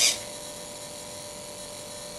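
A steady, faint electric buzz with a constant thin whine from the powered-up homemade RC tractor's servos and electronics holding the open clamp, after a brief hiss right at the start.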